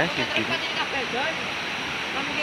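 River water rushing steadily, an even noise that holds throughout, with faint voices talking over it in the first second.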